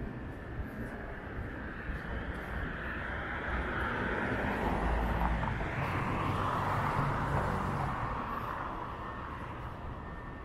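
A car driving past on the street, its tyre and engine noise swelling over a few seconds and then fading away.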